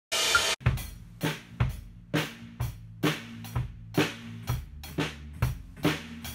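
Drum kits played in a steady beat, a stroke with cymbal wash about every half second, over a steady low ringing underneath. A brief burst of loud hiss comes at the very start.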